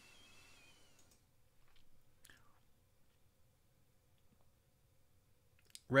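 Quiet room tone broken by a few faint, sharp clicks of a computer mouse.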